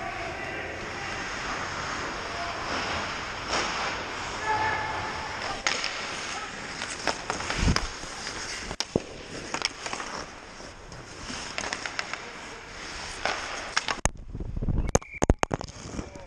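Ice hockey play: skates scraping on the ice with scattered sharp clacks of sticks and puck, echoing in the rink. Near the end a cluster of loud knocks and rubbing sounds as the GoPro, its mount broken, lands on the ice and is handled.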